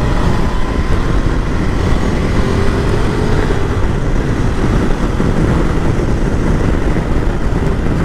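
Ducati Multistrada V2S's 937 cc V-twin pulling up to dual-carriageway speed and then holding it, under a loud steady rush of wind noise on the microphone.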